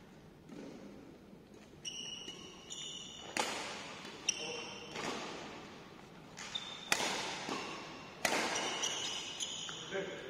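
Badminton rackets striking a shuttlecock in a rally, about four sharp hits that echo in a large hall, with short squeaks of court shoes between them.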